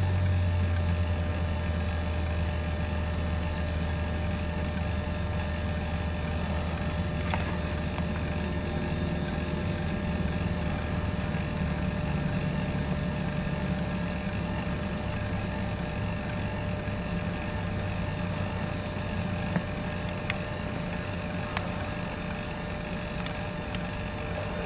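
Crickets chirping in short clusters of quick, high-pitched chirps that stop about three-quarters of the way through, over a steady low hum.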